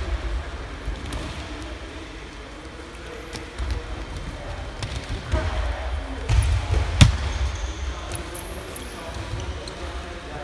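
Dull thuds and scuffs of wrestlers' bodies and feet on a wrestling mat, with a sharper crack about seven seconds in, the loudest moment, over background voices.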